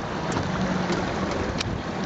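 Wind buffeting the camera microphone: a steady rushing noise, with one brief tick about one and a half seconds in.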